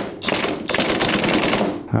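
Cordless 1/4-inch impact driver hammering as it runs down the bolt on a camshaft position sensor cap: a rapid rattle of impact blows that stops just before the end.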